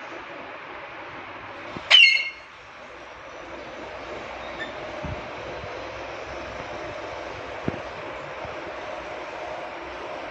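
An Alexandrine parakeet gives one short, loud, shrill call about two seconds in, over a steady background hiss. Two faint clicks come later.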